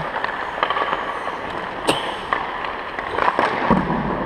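Scattered sharp cracks and clacks ringing around an ice hockey arena: pucks being shot, hitting sticks and boards during practice. The loudest crack comes about two seconds in.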